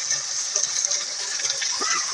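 Chicken pieces and chopped vegetables sizzling in a hot metal pan over a wood fire: a steady hiss with a few faint ticks.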